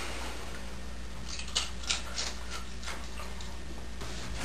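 Steady low hum of room tone, with a run of about seven faint, quick clicks about a second in that stop before the three-second mark.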